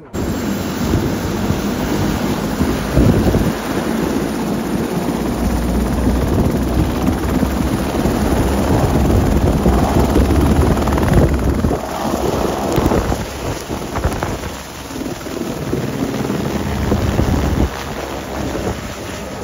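Airbus AS350-family single-engine turbine helicopter running at full rotor speed and lifting off close by, the rotor downwash buffeting the microphone with heavy wind noise. The noise starts abruptly and stays loud and steady throughout, easing slightly for a moment near the end.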